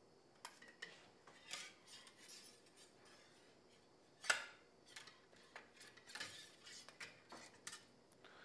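Faint scraping and light metallic clicks of a metal cleaning rod being pushed through a rifle bore with a solvent-soaked patch, with one sharper click about four seconds in.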